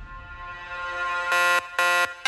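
EDM bounce dance music at 128 BPM: after the bass drops out, a bright synth lead note swells in, then about a second and a half in it breaks into loud, short, repeated stabs with an alarm-like ring.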